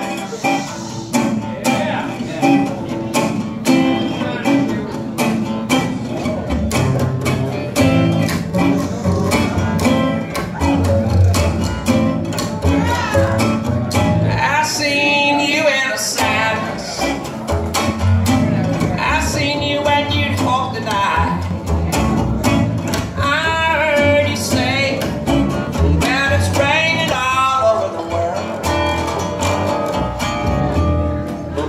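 Acoustic trio playing live: plucked acoustic guitar with steady percussive clicks, upright bass coming in about six seconds in, and singing in short phrases from about fourteen seconds on.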